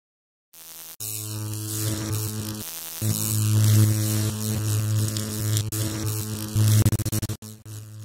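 Electrical hum-and-buzz sound effect for a logo sting: a loud steady low hum with crackling static. It starts about a second in after a brief silence, grows louder at about three seconds, and stutters and cuts out near the end.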